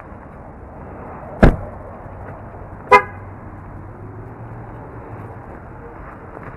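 A car door shuts with a loud thump, and about a second and a half later the car's horn gives one short toot, the chirp of the car being locked with its key fob.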